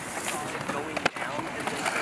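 Faint voices of people talking, with one sharp click about a second in.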